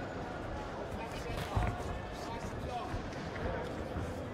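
Thuds of boxers' punches and footwork on the ring canvas over the voices and shouts of a crowd in a hall. One sharp thud about a second and a half in is the loudest.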